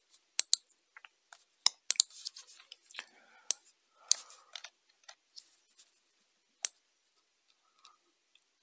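Irregular sharp clicks of a computer mouse, a dozen or so, closely spaced in the first half and sparser later, with one louder click near the end.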